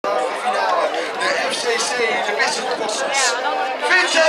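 Several people talking at once: overlapping crowd chatter, with no single voice clear.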